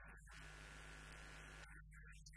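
Near silence: a faint steady electrical hum with low hiss.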